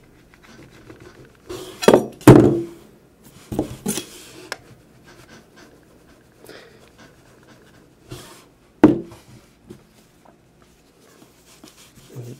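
A hardened steel kitchen knife scraped hard across the glass screen of an MP3 player in a few short strokes. The loudest stroke comes about two seconds in, another around four seconds, and one more near nine seconds, with quiet between.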